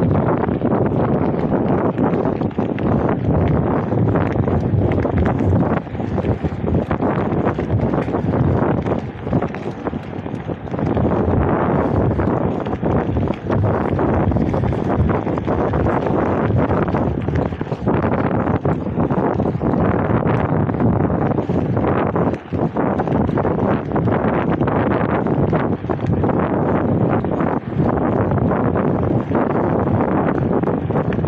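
Wind noise on the microphone of a camera carried on a moving mountain bike: a loud, steady rush with a few brief dips.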